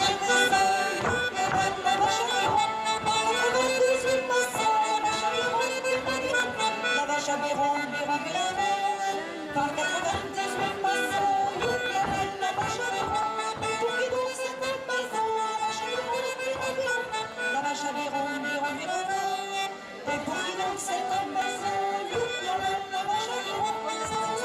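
Live traditional Norman folk dance tune led by accordion, played continuously at a lively, even pace.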